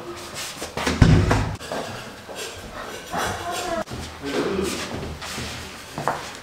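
A dull low thump about a second in, followed by faint, indistinct voices in a bare room.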